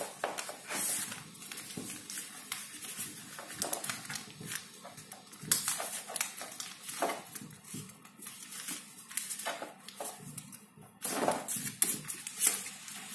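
A sheet of paper being folded and creased into a paper plane by hand on a tabletop: irregular rustling, crinkling and rubbing strokes, louder about five seconds in and again near the end.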